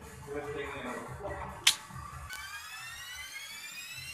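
A single sharp click about one and a half seconds in, typical of billiard balls striking. It is followed by a synthesized riser effect, several tones gliding steadily upward together over the last two seconds, with faint music underneath.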